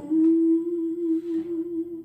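A woman humming one long held note, slightly wavering, that stops after about two seconds.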